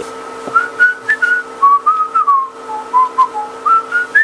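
A man whistling a short tune of quick separate notes that step down in pitch through the middle and climb back up near the end, over a faint steady hum.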